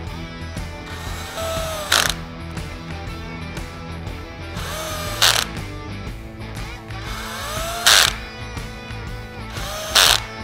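Cordless drill driving quarter-20 screws home into the rack's side rails, four times in a row: each time the motor spins up with a rising whine and ends in a short, loud burst as the screw seats. Background music plays throughout.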